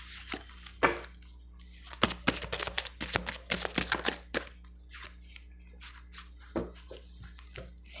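A deck of fortune-telling cards being shuffled by hand: quick runs of dry card clicks and flicks, densest between about two and four and a half seconds in, sparser after.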